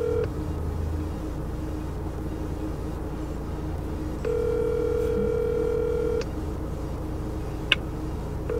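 Telephone ringback tone of an outgoing call that is still waiting to be answered: a steady two-note ring heard from the phone held to the ear, with one ring ending just after the start and a second ring of about two seconds in the middle, separated by a silent gap of about four seconds.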